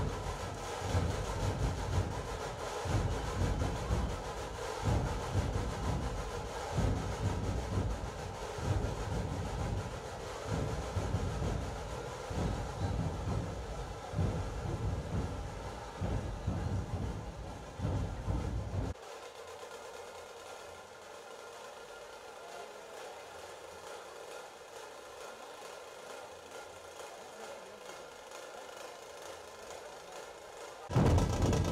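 Din of a dense festival crowd, with heavy, irregular low drum thumps from dhol drumming for about the first two-thirds. The thumps then stop abruptly, leaving the steady crowd noise.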